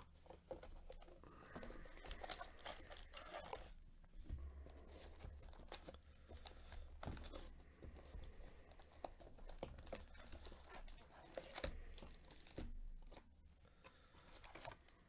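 Cardboard trading-card box being opened and its foil card packs handled: faint tearing and crinkling with scattered clicks and rustles.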